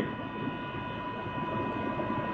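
Heat pump running in cooling mode: a steady machine rush with a thin, constant high whine over it.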